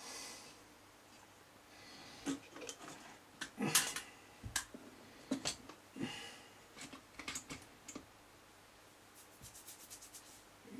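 Small parts of a model locomotive being handled and fitted together by hand: irregular clicks, taps and rubbing, with a quick run of small ticks near the end.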